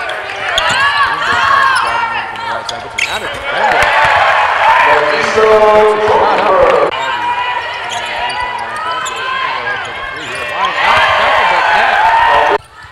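Basketball sneakers squeaking repeatedly on a hardwood court as players run and cut, with the ball being dribbled; a voice calls out in the middle.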